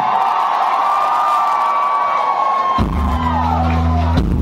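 Live rock band and club crowd: cheering and whoops over a long held high note, then about three seconds in the band comes in with loud, deep sustained bass notes.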